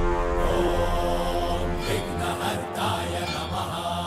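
Devotional Hindu background music with a chanting voice over held, sustained tones.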